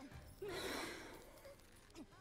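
A person's single breathy sigh, starting about half a second in and fading within about half a second.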